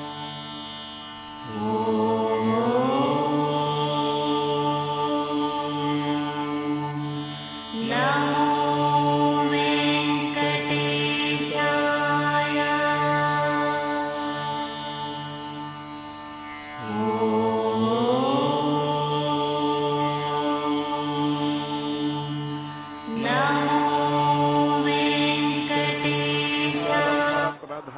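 Indian devotional music: long held melodic notes over a steady drone, in four long phrases, each opening with an upward slide in pitch.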